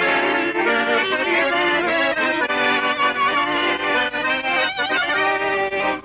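An accordion playing a tune: held chords under a moving melody, one note after another without a break.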